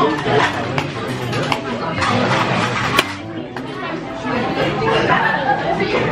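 Restaurant background chatter: many diners' voices talking over one another, with a single sharp clink about halfway through.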